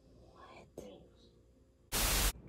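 Near-quiet room with a softly whispered word, then right at the end a sudden loud burst of TV-static hiss cuts in.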